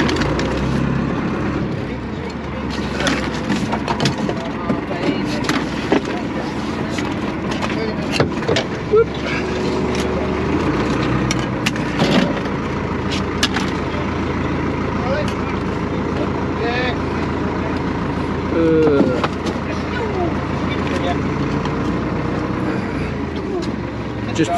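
Scallop shells clacking against each other and against a metal measuring gauge as they are counted into a box, in scattered sharp knocks. Under them runs a steady boat engine hum, with muffled voices.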